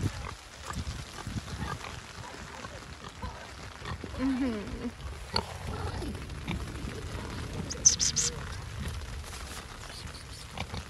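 Domestic pig grunting at close range, with low grunts scattered throughout and a short pitched grunt about four seconds in. A brief scratchy rustle comes about eight seconds in.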